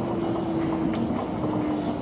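Rubber-tyred automated guideway train (Osaka Metro New Tram) running along its guideway, heard from inside the car: an even running noise with a steady motor whine that dips slightly in pitch near the end.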